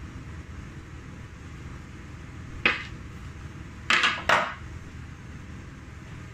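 A hard plastic polycarbonate chocolate mould struck by hand, three sharp knocks: one about halfway through, then two in quick succession. The mould is being knocked to release a bonbon still stuck in its cavity.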